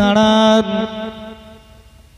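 A man's voice through a microphone and loudspeakers, holding one long chanted note that breaks off about half a second in and fades away over the next second.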